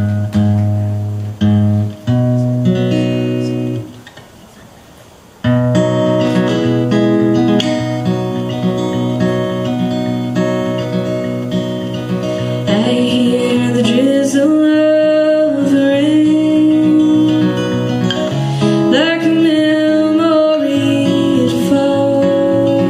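Steel-string acoustic guitar: a few separate plucked notes while it is tuned, a brief quiet gap, then continuous playing from about five seconds in. A woman's singing voice joins about halfway through.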